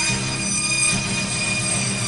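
Live rock band playing, with electric guitars and drums and a high note held steadily over them.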